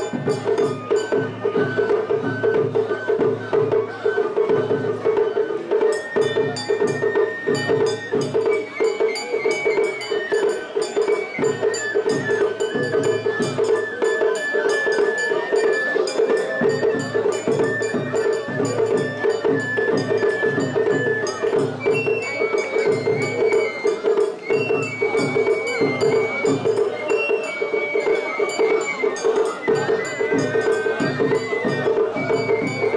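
Traditional Japanese festival music: a high melody line over a steady percussion beat with clanging metal strokes, mixed with the noise of a large crowd.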